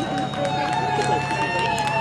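Crowd chatter from many voices, with a steady high-pitched tone held throughout and a low hum beneath.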